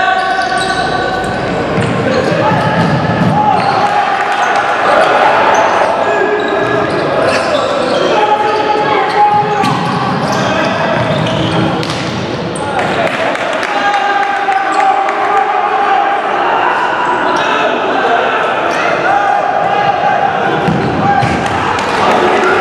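Futsal ball being kicked and bouncing on a sports-hall floor, with players shouting, all echoing in a large hall.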